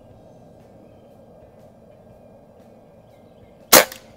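A .22 Beeman QB Chief PCP air rifle firing a single shot near the end: one sharp, loud crack.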